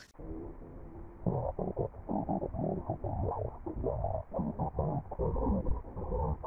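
Commercial soundtrack of cartoon voices and music run through a heavy pitch-lowering, muffling effect, turning them into a deep, garbled rumble. It is quiet for about the first second, then the choppy voice-like rumble runs on.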